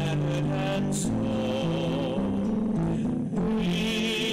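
Hymn music: a singing voice with vibrato over held chords, the notes changing every second or so.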